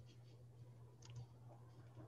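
Near silence: a low steady hum with a few faint clicks, two of them close together about a second in.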